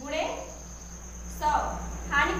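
A woman speaking in short phrases, with a thin steady high-pitched whine and a low hum underneath.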